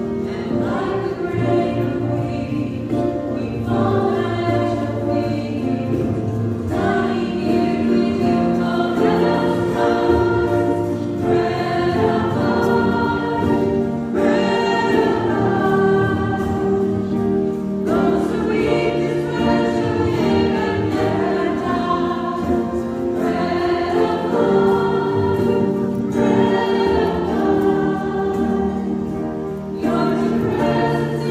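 Church choir singing a hymn, in sung phrases a few seconds long over a sustained lower part.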